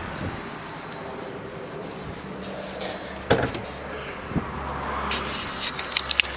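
Low, steady background noise while someone walks round a parked car, with one sharp knock about three seconds in and a fainter one about a second later.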